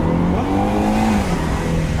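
Jaguar SUV's engine accelerating hard in sport mode, heard from inside the cabin; its note climbs and holds, then drops about a second and a half in as the automatic gearbox shifts up.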